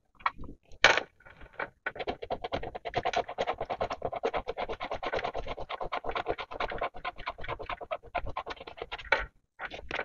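A coin scratching the silver coating off a scratch-off sticker on a paper savings-challenge card: rapid back-and-forth rasping strokes. It starts with a few light taps, settles into steady scratching about two seconds in, and stops shortly before the end.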